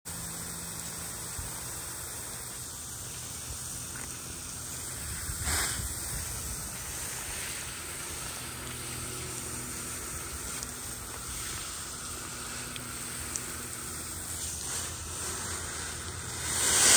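Garden hose spray nozzle hissing steadily as water sprays onto asphalt roof shingles in a water test for leaks, with a brief louder surge about five and a half seconds in.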